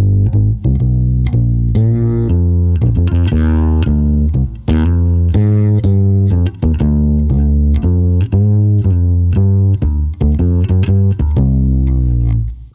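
Fretless electric bass played with the fingers: a continuous line of single plucked notes with a soft attack, some sliding between pitches, played to come close to the sound of an upright double bass.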